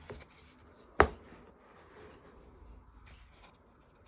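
A page of a paper colouring book being turned by hand, with soft rustling and sliding of paper and one sharp thump about a second in.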